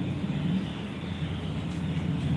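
Steady low background rumble with no distinct events.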